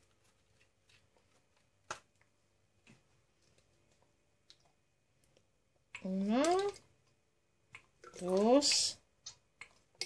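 A few faint clicks and taps from a plastic measuring spoon and an oil bottle being handled as oil is measured out spoon by spoon, the sharpest about two seconds in.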